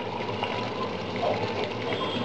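Mushroom and tomato masala sizzling steadily in a stainless steel frying pan on a low flame, while fried potato cubes are tipped in from a steel bowl.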